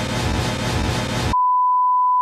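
Dense film-trailer music cuts off abruptly a little over a second in, replaced by a loud, steady single-pitch beep at about 1 kHz: the classic censor-bleep tone.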